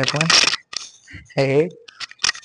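Metallic clinks from a cable machine's weight stack during cable fly reps, with two short bursts of a man's voice, near the start and about a second and a half in.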